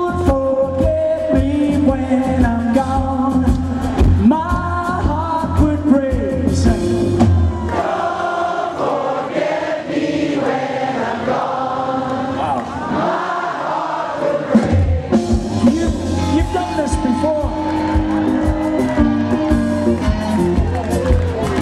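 Live rock band call-and-response: the lead singer sings a phrase over the band, then in the middle, with the bass and drums dropped out, the crowd sings it back together, and the full band comes back in near the end.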